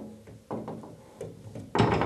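Steel wire shelf knocking against the wall and its plastic back wall clips as it is hung, a series of sharp knocks, the loudest near the end, each leaving the wires ringing briefly.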